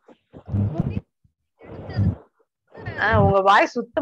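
Speech only: a voice talking in short phrases with brief pauses, the last phrase drawn out near the end.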